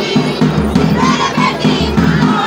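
Jhumur folk music: voices singing over a steady, quick drum beat of about three strokes a second.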